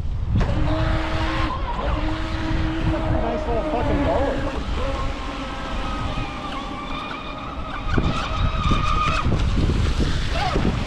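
Brushless electric motor of a radio-controlled speedboat whining at speed, its pitch shifting up and down with the throttle, over heavy wind rumble on the microphone.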